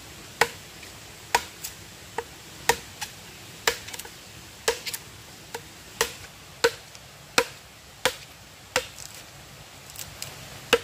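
Machete blade chopping into a fresh log to hollow out a wooden water trough. Sharp strokes come about once a second with lighter ones between, each with a brief ring.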